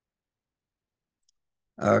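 Near silence, broken by a single faint, short click a little past the middle; a man's voice starts just before the end.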